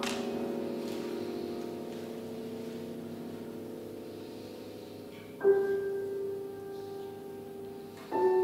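Grand piano played slowly and softly: a chord rings and fades gradually, then the keys are struck again about five and a half seconds in and the new sound is left to ring.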